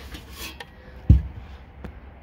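Handling and rubbing noise with one dull thump about a second in and a small click near the end.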